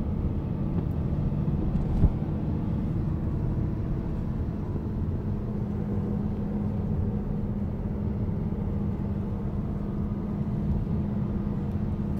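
Car driving, heard inside the cabin: a steady low engine drone over tyre and road rumble, with one short knock about two seconds in.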